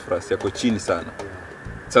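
Pigeons cooing repeatedly.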